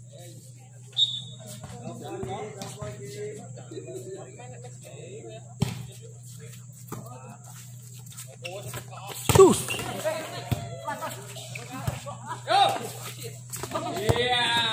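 Volleyball rally: a few sharp smacks of the ball being hit, the loudest about two-thirds of the way through, over spectators' chatter and shouts and a steady low hum.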